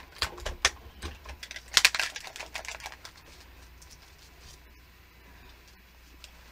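A quick run of clicks, taps and rustles as a plastic stencil and spray bottles are handled on a paper-covered table, loudest about two seconds in, then quiet.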